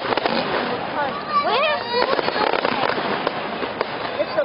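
Aerial fireworks going off in quick succession, sharp bangs and crackling, with spectators' voices in the crowd.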